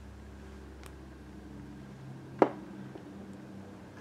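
A single sharp click about halfway through, a small hard makeup container or lid knocking on the tabletop, with a fainter tick shortly before, over a faint steady hum.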